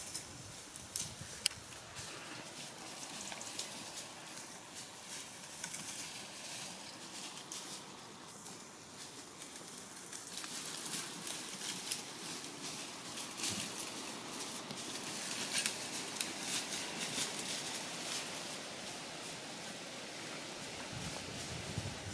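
Faint rustling and crackling of dry grass and leaves underfoot as red deer, a hind and a stag, walk along the fence line, with two sharp clicks about a second in.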